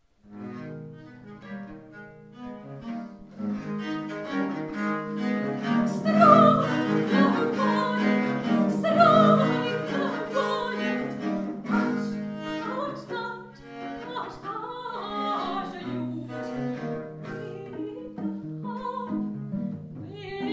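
A consort of three violas da gamba playing a Baroque piece, sustained bowed bass notes under a moving upper melody, starting right at the opening.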